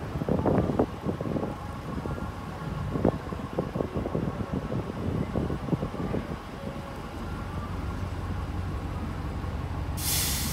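Diesel engine of an Orion V transit bus running with a steady low drone as the bus creeps forward. Irregular knocks and thumps come through over the first six seconds, then the drone carries on alone.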